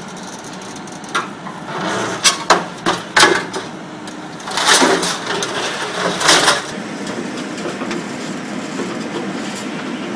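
MC 430 R hydraulic scrap shear on an excavator clanking and scraping against scrap metal as it works the pile. There are several sharp metal knocks a couple of seconds in and two longer grinding bursts around the middle, then a steady machine noise from the excavator running.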